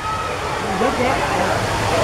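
Steady rush of running water, a wide even hiss that grows slightly louder, with faint indistinct voices of other people behind it.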